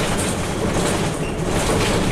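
Bus cabin noise while under way: the engine's low rumble and road noise, with a few brief rattles from the body and fittings.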